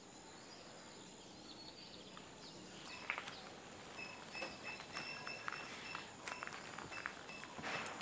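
Faint outdoor ambience with short, quiet bird chirps and a few light clicks, growing a little louder from about three seconds in.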